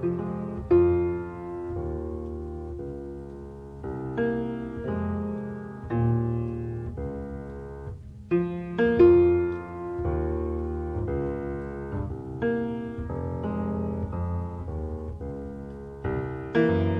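Piano playing an instrumental passage of the song: chords and melody notes struck and left to ring over a bass line, with strong accents about a second in and again around nine seconds in.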